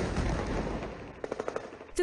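Gunfire in combat footage: a dense burst of shooting that fades over the first second, then a quick string of sharp shots in the second half, like automatic fire.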